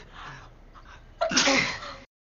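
A woman sneezing once: a faint drawn-in breath, then a single loud sneeze a little past a second in, lasting well under a second.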